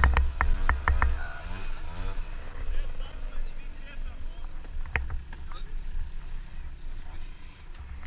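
A small motorbike engine running while the bike stands still, with voices over it and a sharp click about five seconds in.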